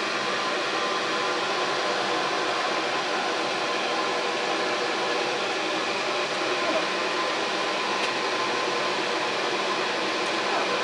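Exhaust fan of a homemade fume hood running, a steady whir with a faint hum.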